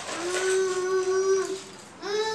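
A small conch shell (shankh) blown by a toddler: one held note of about a second and a half, steady in pitch, that stops abruptly.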